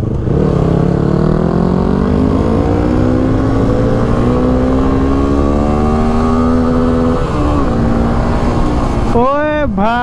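Suzuki V-Strom 250 motorcycle engine pulling under acceleration, its pitch rising steadily for about seven seconds, then dropping sharply as it shifts up and holding steady, with wind rush on the helmet camera.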